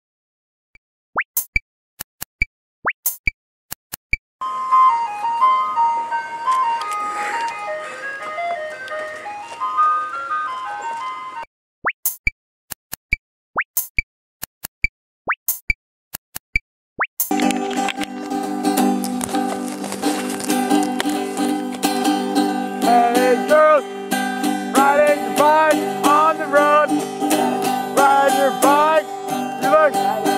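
Cartoonish bubble 'plop' sound effects, short rising pops scattered through the first half, with a tinkling, chime-like melody between them. From about halfway, fuller music takes over, with held chords and sliding, voice-like notes.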